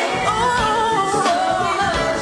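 Live pop concert music: a female singer's lead vocal carries a wavering, ornamented melodic run over the band, coming in just after the start.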